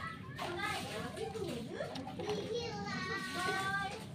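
Children's voices chattering, with one child's high-pitched, drawn-out call near the end.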